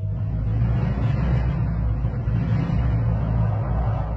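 Loud, steady low rumble of a row of apartment blocks collapsing together in a demolition, starting abruptly.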